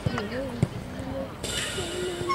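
Two sharp thumps of a football being kicked, about half a second apart, with shouting voices on the pitch.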